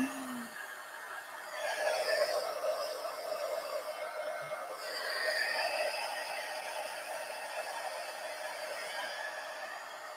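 Handheld craft heat tool blowing hot air to dry thick wet acrylic paint on a paper journal page: a steady fan whir with a low hum, swelling about a second and a half in and then holding.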